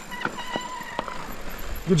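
Sondors Rockstar electric mountain bike ridden over a dirt trail: a thin steady whine from the electric drive over tyre and wind noise, with a few sharp knocks and rattles from the bike over bumps.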